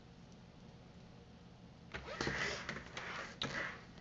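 Quiet room tone, then about two seconds in, a spiral-bound planner being handled and turned around on a wooden table: paper and cover rustling and sliding, with a few light knocks.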